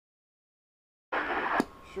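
After silence, a CB radio receiver breaks into a half-second rush of static that ends in a sharp click, leaving a lower hiss just before a voice comes through.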